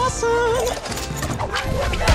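Action film score playing with fight sound effects: a wavering, vibrato-like pitched line in the first second over scattered short hits.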